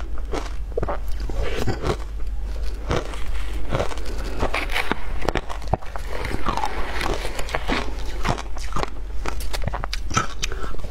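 Close-miked crunching and chewing of mouthfuls of shaved ice, a dense run of crackles and crunches. About halfway, a metal spoon scrapes and clinks in a plastic tub.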